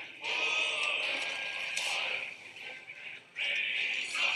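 Film-soundtrack chorus singing a slow work chant, 'And pull...', held as one long phrase; after a short dip, the next phrase, 'And raise up...', begins near the end.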